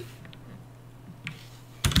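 Computer keyboard keystrokes while a command is typed: a couple of faint taps, then a louder keystroke near the end. A steady low electrical hum runs underneath.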